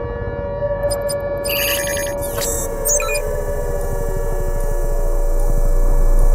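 Synthesized trailer sound design: steady electronic drone tones over a low rumble that swells steadily louder, with some of the tones sliding slowly downward. A short flurry of electronic beeps and glitchy chirps comes about one and a half to three seconds in.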